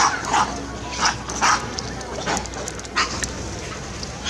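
Monkeys (macaques) giving a handful of short, sharp cries as they chase and scuffle with each other, the loudest near the start and about a second and a half in.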